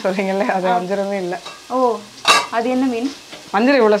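Masala frying in a steel pot as a ladle stirs it, with a woman's voice talking over it and one sharp clink a little over two seconds in.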